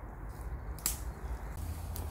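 Footsteps on a woodland floor of leaves and sticks, with one sharp twig snap just under a second in, over a low steady rumble.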